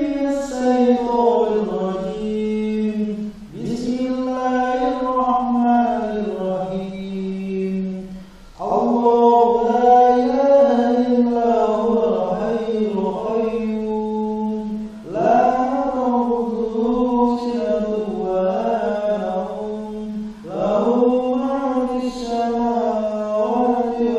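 A single voice chanting in the style of Islamic recitation, in long wavering melismatic phrases of several seconds each, with short breaths between them.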